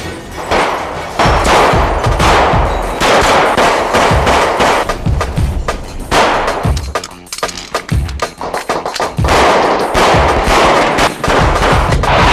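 Automatic gunfire in long rapid bursts, a shootout sound effect, with a short lull about two-thirds of the way through.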